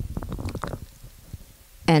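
A person's low, creaky vocal murmur in the first second, then a quieter stretch before a woman starts speaking at the very end.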